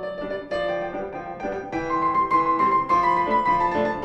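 Steinway concert grand piano played solo in a rhythmic passage, growing louder about half a second in and again near the middle.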